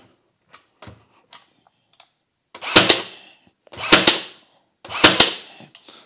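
Ryobi HP 18V cordless brad nailer firing three brad nails into a board in bump (contact-actuated) mode, each shot set off by pressing the nose down with the trigger held, about a second apart in the second half. A few faint clicks of handling come first.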